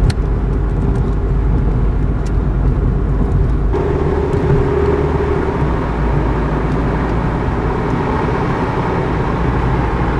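Steady engine and tyre rumble of a car driving, heard from inside the cabin. There is a click at the start, and the noise changes abruptly about four seconds in.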